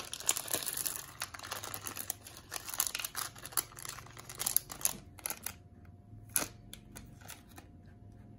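Small plastic bag crinkling as it is handled and the gems are shaken out of it. The crackling thins out about five seconds in, leaving a few separate sharp clicks.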